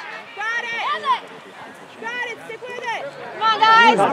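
Spectators and young soccer players shouting and calling out indistinctly during play, louder near the end.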